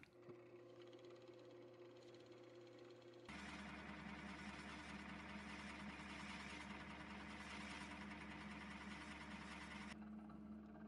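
Faint, steady running of a drill turning a Forstner bit as it bores into a birch burl block; about three seconds in the sound steps up and grows fuller, then stays steady.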